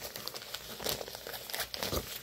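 A black fabric backpack being handled and held up, rustling in a run of short, crackly rustles.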